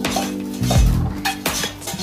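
Several light clinks and knocks of kitchen items being handled on a countertop, over background music.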